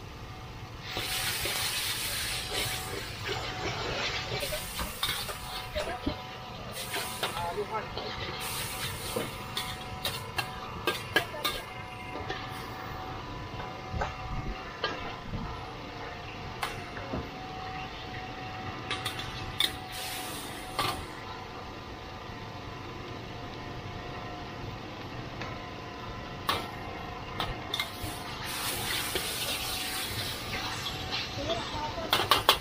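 Flat rice noodles stir-fried in a large wok: a metal spatula scrapes and knocks against the wok, with bursts of sizzling hiss, the longest near the start and near the end. Voices chatter underneath.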